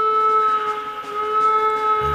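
A steady electronic tone held at one pitch, opening a music track.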